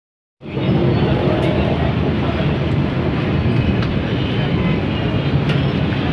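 Fish deep-frying in a large pan of oil over a wood fire: a steady sizzle with a few short crackles. Underneath are a low, constant rumble and background voices.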